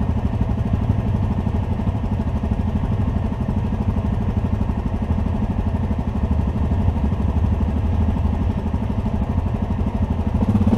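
ATV engine running steadily at low revs, heard from on board the quad: a steady low drone with no revving.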